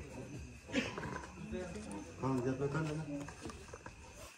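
Indistinct voices of a small gathered group talking quietly, with a somewhat louder voice from about two seconds in.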